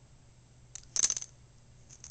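A boxer in a fly-snapping fit jerking its head at imaginary flies: a short burst of rapid metallic jingling from the metal tag on its collar about a second in, and another brief jingle near the end. The head-jerking snaps are the sign of fly snapping syndrome.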